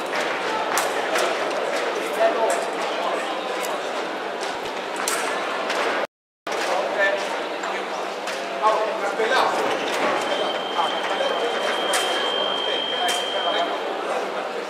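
Indoor sports-hall ambience with a murmur of many people talking and scattered sharp clicks. The sound cuts out completely for a moment about six seconds in. Near the end a steady high tone sounds for about three seconds.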